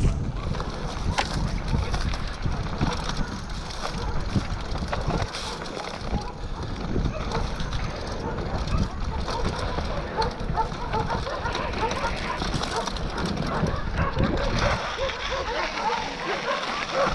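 Mountain bike ridden fast down a rough dirt singletrack: a constant clatter of knocks and rattles from the bike over the bumps, over a low wind rumble on the camera's microphone.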